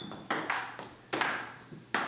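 Table-tennis rally: the celluloid ball clicking off paddles and the table, three sharp hits a little under a second apart, each with a short ring.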